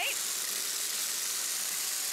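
Two upright vacuum cleaners, a Shark Apex UpLight DuoClean and a Shark Rotator Professional, running together with a steady airy hiss as they are pushed over dried beans on a hard floor.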